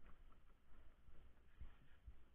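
Near silence: a faint low rumble with a few soft knocks.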